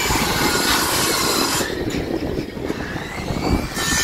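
Wind buffeting the microphone, a rough, uneven rumble with a hiss above it that thins out for a couple of seconds in the middle.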